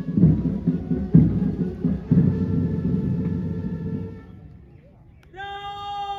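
Parade band music with drum beats and held chords, dying away about four and a half seconds in; just after five seconds a new held note begins.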